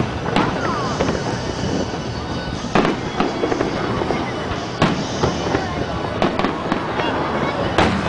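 Aerial fireworks shells bursting overhead: a series of sharp bangs about one to two seconds apart, over a steady background of crowd voices.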